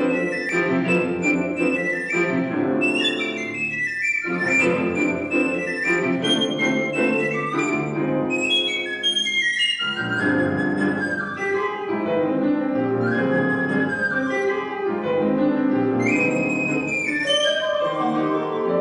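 Recorder playing a melody over grand piano accompaniment in a classical piece, with short breaks in the recorder line while the piano carries on.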